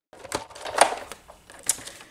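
A magnetic die-cutting platform being cranked through a hand-operated die-cutting machine: a few scattered clicks and knocks over a low rustle as the plates pass under the roller.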